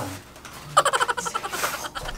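Polystyrene foam packing squeaking as it is pulled off a TV screen. The rapid, high squeal starts about a third of the way in and lasts about a second.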